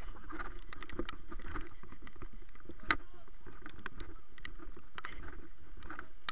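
Footsteps splashing and squelching through running water and mud, with water running over rocks and many small irregular knocks. One sharper knock comes about three seconds in.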